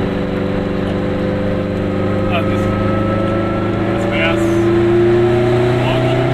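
Goggomobil's small two-stroke twin engine heard from inside the cabin, pulling steadily as the car gathers speed, its pitch rising slowly throughout.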